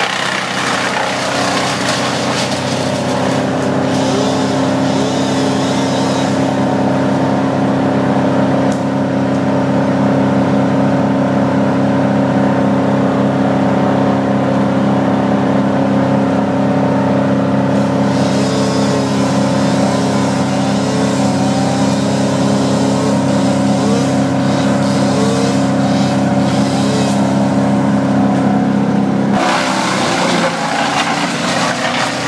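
An engine running steadily at a constant speed, with faint wavering tones above its steady hum.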